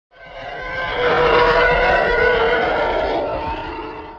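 Intro sound effect for a channel title card: a rich, many-toned sound over a low rumble swells up over the first second, holds, then fades away near the end.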